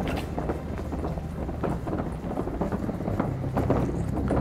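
Lightly loaded plastic wheelie bin being pulled over brick paving, its wheels rattling and clattering in a quick, irregular run of knocks.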